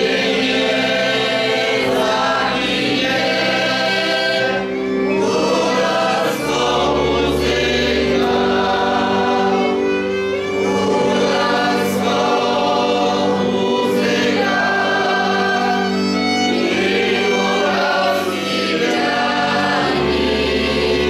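Highland folk band of fiddles and double bass playing a song with long held notes, with a group of voices singing along.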